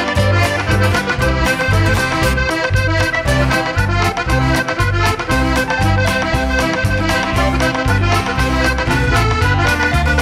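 Red two-row button accordion playing a lively folk tune, with acoustic guitar, electric bass, keyboard and drums behind it. The bass and drums keep a steady beat.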